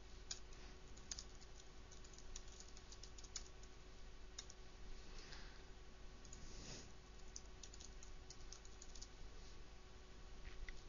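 Faint typing on a computer keyboard: irregular key clicks with a low steady hum underneath.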